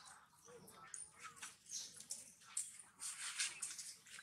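Young macaques giving short, faint squeaks and whimpers, with bursts of rustling in the dry leaf litter.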